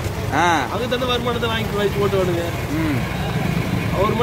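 A man speaking, with one loud rising-and-falling exclamation about half a second in, over a steady low background rumble.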